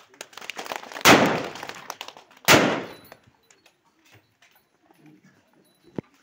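Two loud bangs about a second and a half apart, each dying away in under a second, of the kind made by celebratory gunfire or firecrackers.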